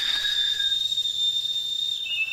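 A single steady, high-pitched whistle held without wavering, dropping slightly in pitch right at the end.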